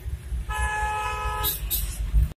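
A vehicle horn blares once for about a second, starting about half a second in, over the low rumble of engine and road noise heard from inside a car.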